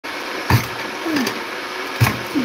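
A lever-action French fry cutter being pressed down, forcing a potato through its blade grid: a sharp thunk about half a second in and another near the end, over a steady background hiss.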